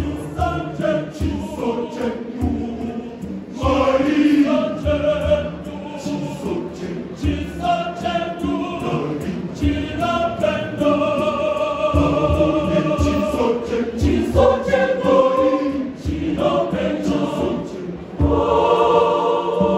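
Large mixed church choir singing a Shona song in full harmony, men's and women's voices together. Short low thuds, like a drum beat, sound underneath about once a second.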